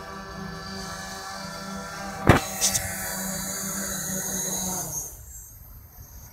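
Hexacopter's electric motors and propellers running with a steady multi-toned whine, broken about two seconds in by a loud sharp crack and a couple of smaller knocks. About five seconds in the motor sound winds down and stops as the copter sits on the ground.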